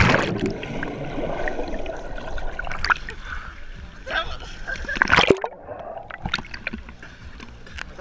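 Splash of a person jumping into a swimming pool, heard with the microphone under water: muffled bubbling and rushing water. Water sloshes around the microphone as it bobs at the surface, with another loud splash about five seconds in that cuts off suddenly.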